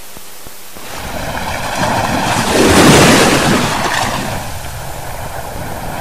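A sea wave surging up a sandy beach and washing back. The rush swells from about a second in, is loudest around three seconds, and then recedes into a softer wash.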